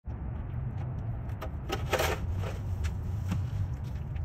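Steady low rumble of street traffic, with a few brief scrapes and rustles over it, the loudest about two seconds in.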